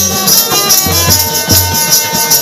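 Live Bengali folk music from a small ensemble: a plucked dotara plays steady notes over dhol drum strokes, while a rattling percussion part beats about four times a second.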